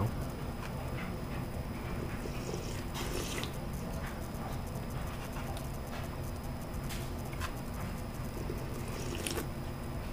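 Spoon dipping and stirring in broth in an instant ramen bowl: a few faint scrapes and small liquid sounds over a steady low room hum.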